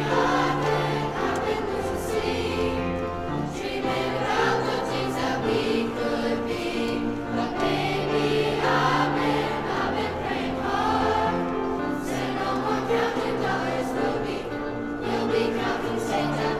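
A middle school choir of young mixed voices singing in parts, with piano accompaniment.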